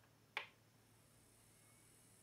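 One sharp click about a third of a second in, as a front-panel push button on a homemade turntable is pressed to select fast forward. Otherwise near silence with a faint steady low hum.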